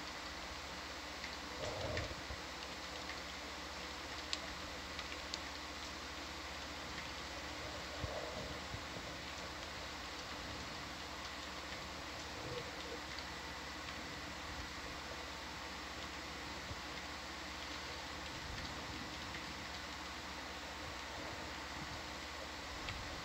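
Steady hiss with a low electrical hum and a few faint clicks: the background noise of the dive's audio feed with nobody talking.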